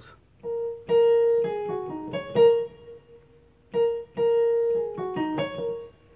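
Digital keyboard's piano voice playing a short single-line melody twice: each phrase opens on repeated notes and then steps downward, with a brief pause between the two phrases.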